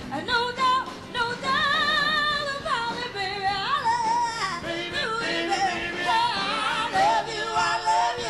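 A female blues singer sings long held notes with wide vibrato and sliding runs into a microphone, over a live blues band.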